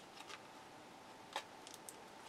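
Faint handling of a deck of tarot cards: one sharp card click about one and a half seconds in, followed by a few light ticks.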